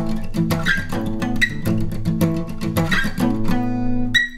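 Steel-string acoustic guitar strummed in quick down-up strokes on an A5 power chord, with the 4th-string riff hammered on from the 9th to the 11th fret and back; a chord rings out near the end.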